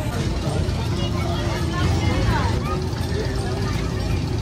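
Outdoor street ambience: a steady low rumble with faint voices of people in the background.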